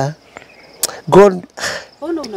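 A faint, steady high trill, like an insect such as a cricket, in a pause between a man's short vocal sounds, with a sharp click a little before one second in.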